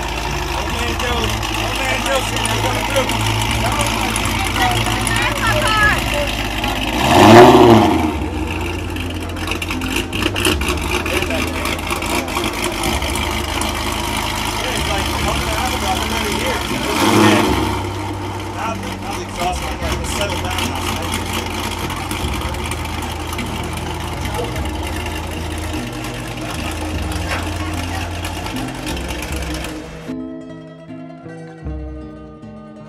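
Dodge Charger SRT8 Super Bee's 6.4-litre HEMI V8, fitted with an aftermarket cam, idling steadily and revved briefly twice, once about seven seconds in and again about ten seconds later.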